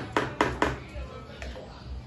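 Light plastic knocks and clicks, a quick cluster of four and then one more about a second and a half in, as a plastic stirring paddle is lifted out of a plastic bucket and set into a plastic measuring cup.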